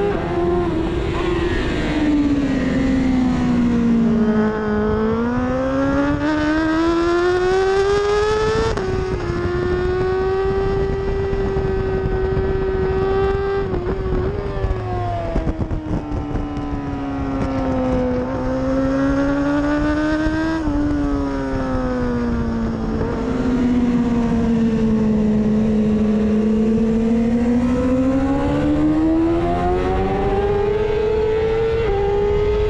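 Onboard sound of a 1000 cc racing superbike's engine on a wet track. The engine note rises and falls repeatedly as the bike accelerates and slows through corners, with a couple of sudden steps in pitch at gear changes, over a steady hiss of wind and spray.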